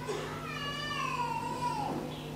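A single high-pitched cry, drawn out over about a second and a half and sliding down in pitch.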